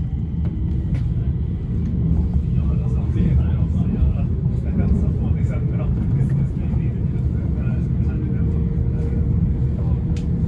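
C25 metro train in motion, heard from inside the carriage: a steady low rumble of wheels and running gear.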